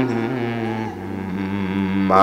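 A man's voice holding one long, low, drawn-out note in melodic Quran recitation, steady in pitch and fading a little about halfway.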